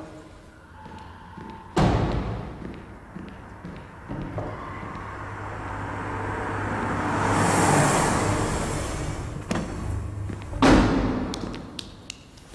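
An SUV's door shutting with a heavy thump about two seconds in, then a second loud thump near the end as the rear hatch is worked and its load taken out, over a low steady hum.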